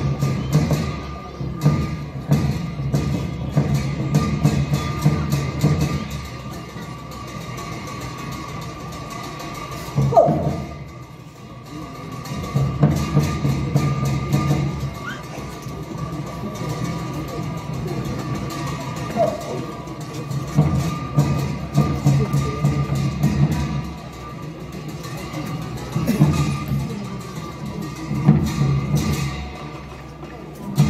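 Tibetan opera (Ache Lhamo) dance accompaniment: a drum and cymbals beating a steady rhythm, with a short lull about ten seconds in.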